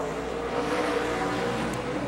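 NASCAR Cup stock car V8 engines running on track in practice, a steady engine note at the trackside microphone.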